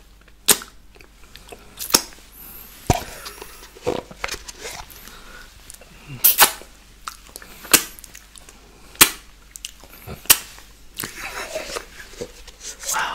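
Wet mouth pops and smacks of fingers being sucked and licked clean of milkshake: sharp separate clicks about once a second, around nine in all, one a quick double.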